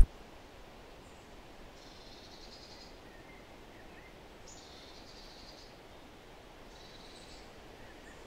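Faint outdoor ambience with three brief, faint bird calls, high in pitch, spaced a few seconds apart.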